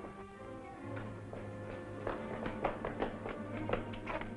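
Dramatic orchestral film-serial underscore: held chords, joined about a second in by a low sustained note, with a run of short, sharp accented notes over them.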